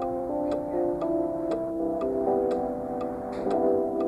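A mechanical clock ticking steadily about twice a second over soft sustained background music.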